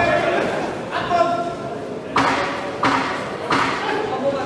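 Voices calling out in a large, echoing sports hall, with three short bursts of noise in the second half, a little under a second apart.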